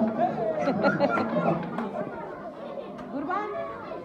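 Chatter of many people talking over one another, with several voices overlapping throughout.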